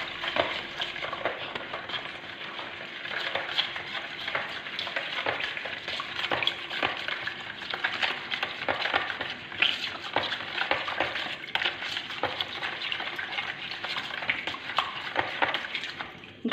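A spoon stirring a thin liquid of milk, water, oil, sugar and yeast in a plastic bowl: a continuous swishing of the liquid with many quick scrapes and ticks of the spoon against the bowl.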